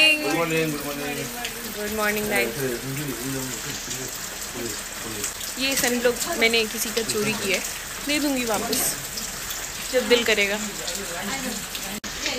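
Steady rain falling, an even hiss under voices talking.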